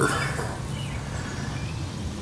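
Quiet outdoor background: a steady low rumble with a few faint, short high chirps.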